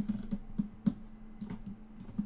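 Computer mouse and keyboard clicks, about eight short taps at uneven intervals, over a steady low hum.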